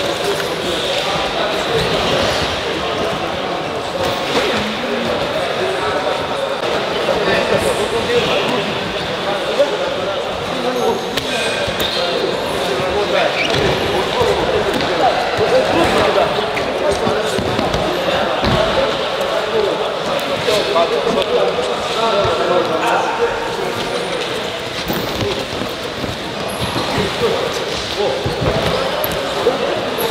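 Freestyle wrestling practice on gym mats: repeated thuds of bodies and feet hitting the mats, mixed with overlapping, indistinct voices of the wrestlers and coaches.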